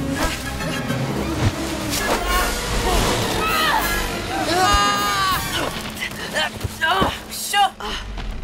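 Wordless yelling and shouting over film-score music, with a held cry about five seconds in and a few thuds.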